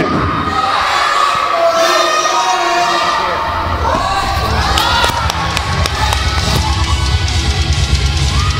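Crowd shouting and cheering in a hall, then heavy metal entrance music with a driving drum beat coming in over the PA about halfway through and carrying on.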